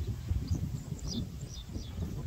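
A few short, high, falling bird chirps over a steady low rumble of wind on the microphone.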